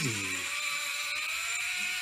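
Zipline trolley running along a steel cable: a steady whirring hiss with a faint tone that rises slowly as the rider picks up speed.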